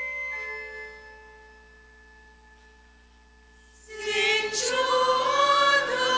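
Held organ notes fade away, and about four seconds in a choir begins singing, loud and with vibrato, over organ accompaniment.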